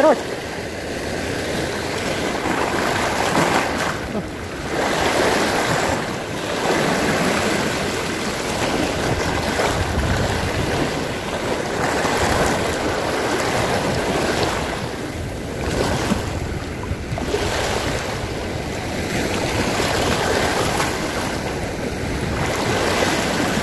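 Small sea waves washing over a rocky shoreline: a steady rush of surf that swells and eases every few seconds.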